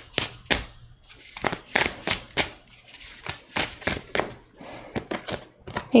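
A tarot deck being shuffled by hand: a run of irregular, sharp card clicks and snaps, several to the second.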